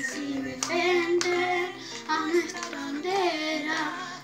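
A child singing a song over a recorded musical accompaniment, with a few sharp percussive hits on the beat.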